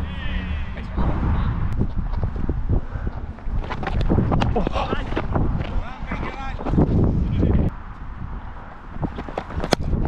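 Voices of players calling out across a cricket field, over wind rumbling on the microphone, with a sharp click near the end.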